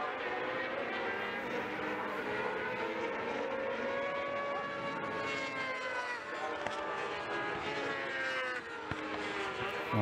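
Several 600cc race motorcycles' engines running at high revs as they pass in the distance, a few engine notes overlapping, each one's pitch rising and falling.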